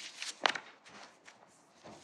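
Faint handling noise: a few soft rustles and one sharp click about half a second in.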